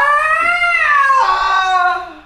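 A man's long, loud, drawn-out yell in one breath while stretching, rising in pitch and then sliding down and fading near the end.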